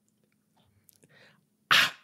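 A pause of near silence ending with one short, sharp breathy burst from a person, like a quick hard intake of breath, just before talking starts again.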